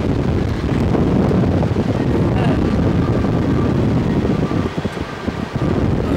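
Wind rushing over the microphone of a slingshot ride's onboard camera as the capsule swings through the air: a loud, steady rush that dips briefly about five seconds in.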